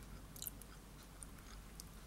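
Faint chewing of a crunchy strawberry Pocky biscuit stick, with a few soft crunches, the loudest about half a second in.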